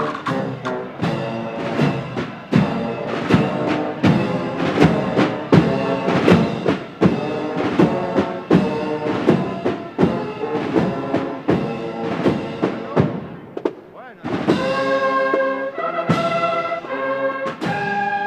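Processional band playing a march: drum strokes about three a second under brass chords. Near the end the drums drop back and the brass holds long chords.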